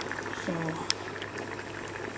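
Tomato stew with beaten eggs bubbling in a saucepan, an even bubbling hiss, with one sharp click about a second in.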